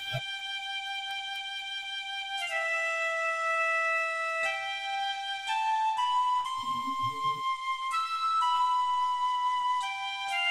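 Background film music: a flute-like woodwind plays a slow melody of long held notes, stepping to a new pitch every second or so.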